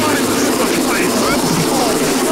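Industrial hardcore DJ mix in a dense, steady passage of distorted noise, full of short swooping pitch glides and without a clear drum beat.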